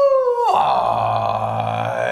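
A man's drawn-out wordless vocal sound: a high yell falling in pitch, which breaks about half a second in into a low, sustained groan.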